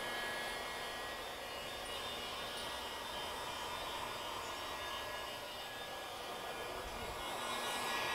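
Electric heat gun blowing steadily. It is warming freshly laminated acrylic resin on a prosthetic socket to speed the cure.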